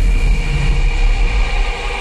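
Drum and bass music dominated by a deep, heavy sub-bass note held through the moment, with fainter higher layers above it; the bass eases off near the end.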